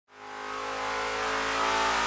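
An engine running at a steady speed, fading in at the start and growing slightly louder, with a hiss on top.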